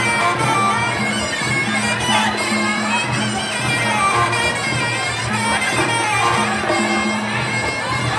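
Sarama, the traditional Muay Thai ring music: a reedy pi java (Thai oboe) plays a wavering melody over a repeating low drum pattern.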